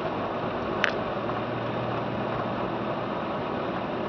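Steady engine and road noise heard from inside a car driving slowly over a snow-covered street, with one short sharp click a little under a second in.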